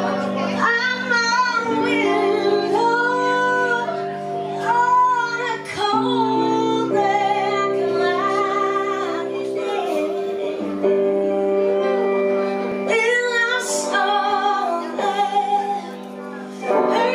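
Live band music: a woman sings lead vocals, holding long wavering notes, over electric guitar and sustained backing notes.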